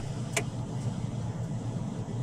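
A car's engine running at low speed with a steady low hum while the car creeps through a slow turn, with a single faint click about a third of a second in.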